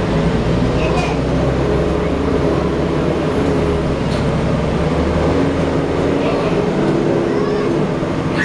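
Cummins ISL inline-six diesel and Allison transmission of a 2010 Gillig Low Floor BRT transit bus running in service, heard from inside the cabin: a steady low rumble with engine tones that shift in pitch, and a few faint rattles.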